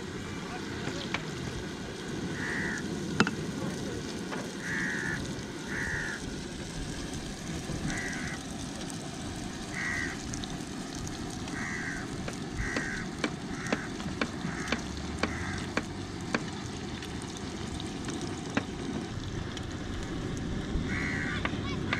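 Rings of sel roti (rice-flour batter) frying in hot oil in an iron wok with a steady sizzle. Sharp metal taps come through in the second half as the rings are turned with metal sticks.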